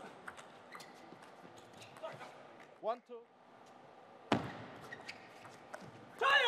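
Quiet table tennis hall just after a point, with scattered light ticks of a ping-pong ball bouncing. A short voice call comes about three seconds in, and a single sharp knock follows just past four seconds.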